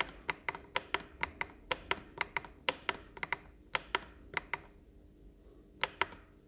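Push buttons on a Stanley SOLIS pellet stove's control panel clicking as they are pressed in quick succession, about four clicks a second, with a pause of about a second near the end.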